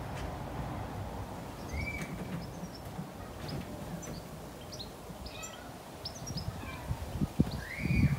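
Garden birds chirping: short high chirps scattered throughout, with a louder curved call about two seconds in and again near the end, over a low steady outdoor rumble.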